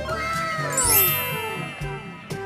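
Brass-led background music with a sound effect over it: several tones sliding down in pitch, and a bright shimmering chime about a second in.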